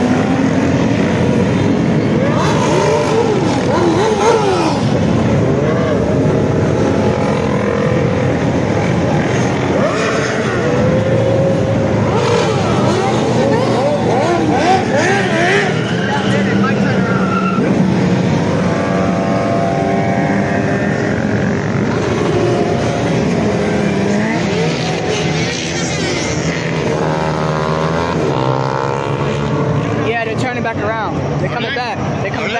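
Motorcycle and car engines revving as they pass on the street, several overlapping engine notes rising and falling in pitch.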